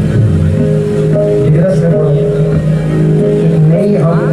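Live qawwali music: steady held harmonium notes under a man's singing voice.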